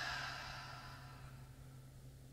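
A long breath let out through the mouth after a deep held inhale: a breathy sigh that fades away over the first second and a half.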